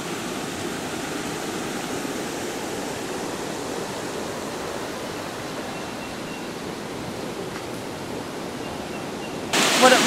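Steady rushing of a shallow river running over rocks, an even, unbroken noise with no distinct splashes.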